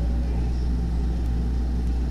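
A steady low hum with a faint even hiss, unchanging throughout, with no other distinct sounds.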